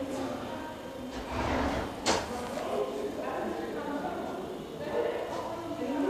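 Indistinct talking in a large indoor hall, with one sharp knock about two seconds in.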